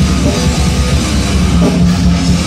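Grindcore band playing live and loud: distorted electric guitar and bass over fast, dense drumming, without a break.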